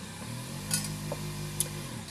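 Single-serve pod coffee maker running: a steady low pump hum with hiss as it brews into a thermos.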